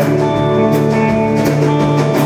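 Live rock band playing an instrumental passage between sung lines: electric guitars holding chords over a steady drum-kit beat with cymbal strikes.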